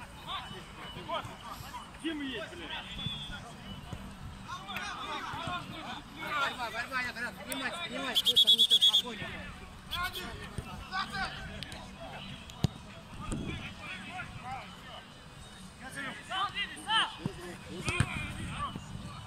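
Referee's pea whistle blown once, a trilling blast of about a second midway through, stopping play. Players shout on and off around it.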